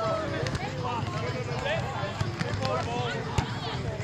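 Background chatter of several people's voices outdoors, with one sharp smack about three and a half seconds in, the sound of a hand striking a volleyball during play.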